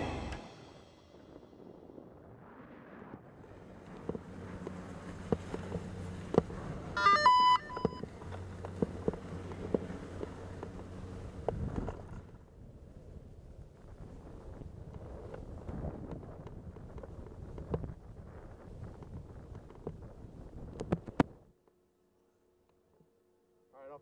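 Ski chairlift ride: a low steady hum with scattered knocks and clicks, a short beep-like tone about seven seconds in, then a rougher rushing noise that cuts off suddenly near the end.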